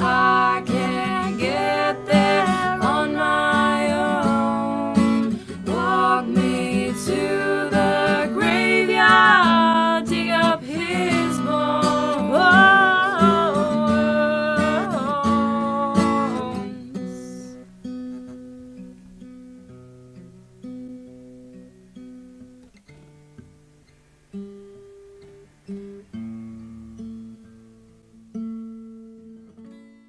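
Acoustic guitar music with a wavering melody line over the strumming; a little over halfway through the full sound drops away, leaving sparse single guitar notes that ring out and fade.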